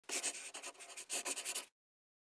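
Rapid scratching strokes, like a pen scribbling on paper, playing as the sound effect of an opening logo. They come in two quick runs and stop abruptly about one and a half seconds in.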